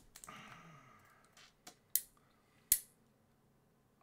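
Pen scratching on a paper review sheet, followed by two sharp clicks about two seconds in, less than a second apart.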